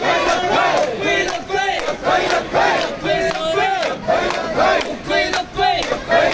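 Group of mikoshi bearers shouting a rhythmic call-and-response chant in unison while carrying a portable shrine, one loud shout about every second over a dense crowd.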